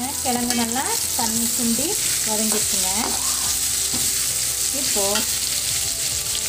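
Diced potatoes frying in hot oil in a wok with a steady sizzle, stirred and turned with a perforated steel ladle.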